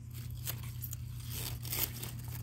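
Swiss chard leaves being cut and handled close to the microphone: leafy rustling and tearing with a few crisp snaps, one about half a second in and another near the end.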